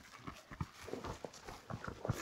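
Running footfalls of several trail runners on a dirt and rock mountain path, quick uneven steps about four or five a second.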